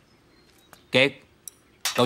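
A short voiced utterance about a second in, a light clink at about a second and a half, then a man starts speaking near the end.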